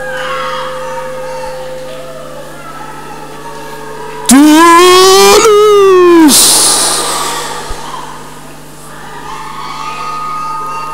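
A loud, drawn-out cry from one voice about four seconds in, lasting about two seconds, its pitch rising and then falling, over a steady low hum.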